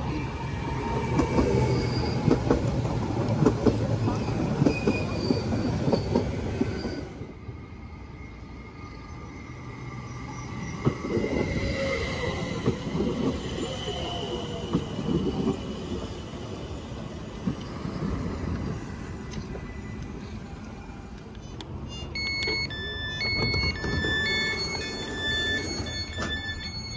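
BLS Stadler MIKA RABe 528 electric multiple unit running into the platform: wheels clattering over the rails with light wheel squeal, in two stretches. A run of electronic beeps sounds near the end.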